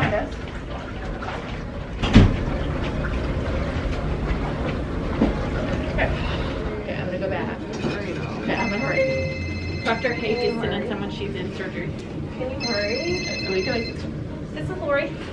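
A thump about two seconds in, then an electronic ringing tone made of several steady high pitches, sounding twice for about two seconds each, over low voices.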